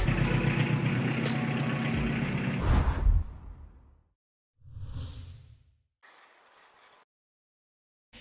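Edited title-card sting: a loud, low-heavy sound effect that fades out over about three seconds, then a short whoosh about five seconds in as the show logo appears.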